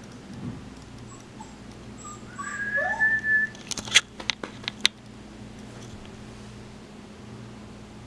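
Puppy whining: a high, steady whine of about a second with a short rising whimper under it, followed by a quick run of several sharp clicks.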